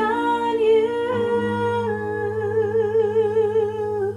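A woman's singing voice holds a long note, with vibrato setting in about halfway, over sustained digital piano chords that come in about a second in.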